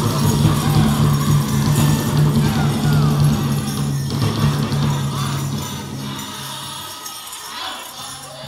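Pow wow drum group singing with the drum, and the dancers' ankle bells jingling. The song grows quieter over the last couple of seconds.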